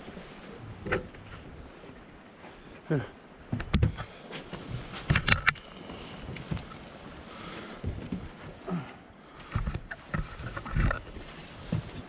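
Scattered knocks and thumps of gear being handled on a fishing boat, over a low steady background.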